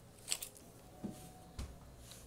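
Faint handling sounds: a sharp click a moment in, then a soft low thump about a second and a half in.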